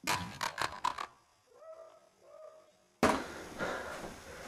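A rapid string of about six sharp cracks in the first second, shots from an airsoft pistol, followed by two faint, short whining cries. About three seconds in there is a sudden jump to loud, noisy room sound.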